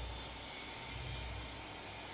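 Faint steady hiss with a low hum beneath it: the background noise of the recording, with no other sound.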